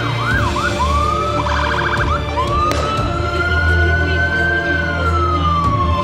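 Police van siren switching modes. It gives a few quick up-and-down yelps and a short fast warble, then a long wail that rises slowly, holds, and falls away near the end.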